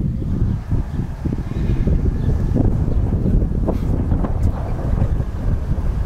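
Wind buffeting the microphone: a steady low rumble, with a few faint knocks through the middle.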